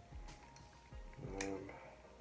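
Faint background music with faint steady tones, and a couple of light clicks from earbuds and their plastic charging case being handled.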